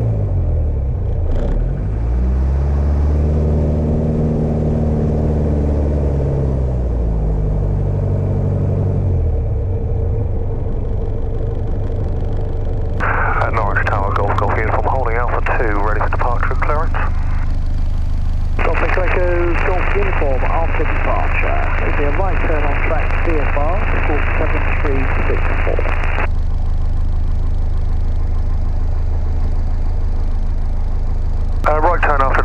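Piper Warrior II's four-cylinder Lycoming piston engine running at low taxi power, heard inside the cabin. Its pitch rises and falls between about 2 and 9 seconds, then holds steady. From about 13 seconds, two thin, band-limited radio voice transmissions come over it.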